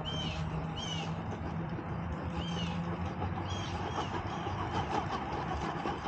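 Axial SCX10 Pro RC rock crawler's electric motor and drivetrain whirring under load as the truck creeps up a rock face, rougher for a moment past the middle. A bird gives a short chirp over and over, about once a second.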